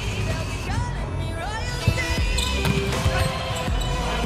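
A volleyball bounced several times on the hard court floor as a server gets ready, over arena pop music.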